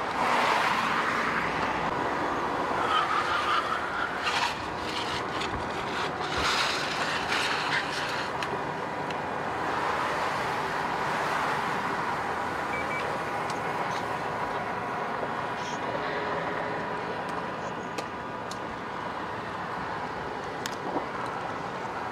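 Highway traffic noise: a steady rush of vehicles and road noise, with a few faint clicks and knocks.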